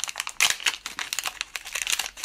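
Thin plastic bag crinkling and rustling in the hands as small screen modules are pulled out of it: a run of irregular crackles throughout.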